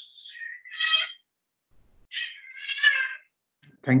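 Two high-pitched, drawn-out cries: a short one about a second in and a longer one from about two seconds in.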